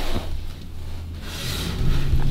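Rustling and handling noise as the camera is moved, over a low steady hum inside a stationary car's cabin. The rustle grows brighter near the end.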